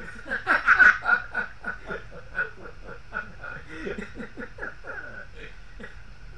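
A man laughing hard in a fast run of ha-ha bursts, loudest about a second in, then trailing off and stopping near the end.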